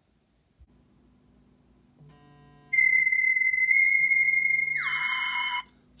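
iPhone timer alarm going off: loud electronic tones that come in about two seconds in and stop just before the end, at the 20-minute charging test's end.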